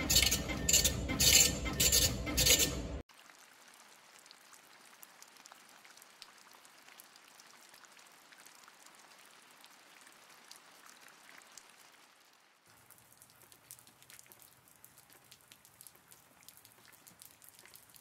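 Near silence: quiet room tone with faint scattered ticks and clinks. For about the first three seconds a louder sound with a steady beat of roughly three pulses a second plays, then cuts off suddenly.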